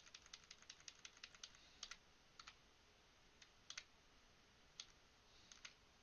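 Faint computer keyboard key presses: a quick run of about a dozen taps in the first second and a half, then scattered single and double taps. These are the cursor keys being pressed to step a video frame by frame.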